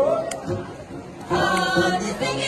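A group of voices singing a Tibetan folk song for a dance. The singing drops away for under a second partway through, then comes back in strongly, with a brief click early on.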